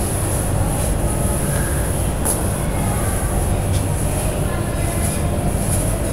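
Steady low rumbling background noise with a constant faint high whine, and a few faint scrapes from a duster wiping chalk off a blackboard.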